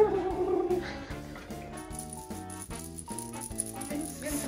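Background music playing a simple melody of short notes, with a plastic baby rattle toy being shaken over it. A brief voice sound comes right at the start.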